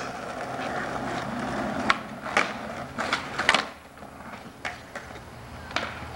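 Skateboard wheels rolling on an asphalt street, with several sharp clacks of the board against the road between about two and three and a half seconds in, as the skater pops and lands flip tricks; the rolling then dies down.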